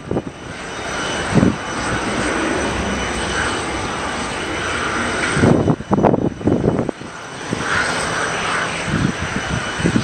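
Embraer 190 jet airliner's twin General Electric CF34 turbofans heard as a steady rushing roar while it climbs out after takeoff. Loud low rumbling swells, typical of wind on the microphone, break in about a second and a half in, again from about five and a half to seven seconds, and near the end.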